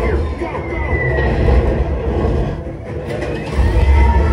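Motion-simulator ride soundtrack played through the theatre speakers: a deep, loud rumble with gliding whooshes from the on-screen flight and battle, the rumble swelling near the end.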